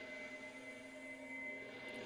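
Faint, steady electronic drone of a few held tones from the cartoon episode's soundtrack.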